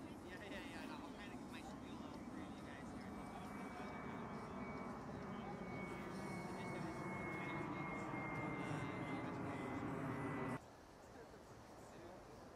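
Jet aircraft passing overhead: a broad rumble building steadily louder with a high whine that slowly drops in pitch, cut off suddenly about ten and a half seconds in.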